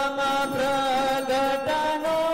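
Hindu devotional chanting sung in long held notes, the pitch stepping up near the end.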